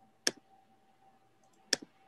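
Two sharp clicks about a second and a half apart, the second followed by a smaller one, over a faint steady tone.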